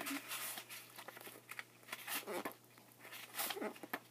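Paperback book being handled close to the microphone, its pages and cover giving a few soft, irregular rustles.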